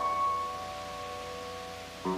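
Solo piano chord held and slowly dying away, its top note ringing clearly above the rest, with no new notes struck until the end.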